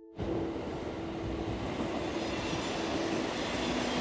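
Commuter train coming into an underground station platform: a loud, steady rush of wheel and running noise that cuts in suddenly just after the start.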